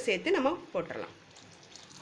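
A woman speaking briefly in Tamil, then a faint, steady hiss of liquid as dal water is poured into a pot of simmering okra curry.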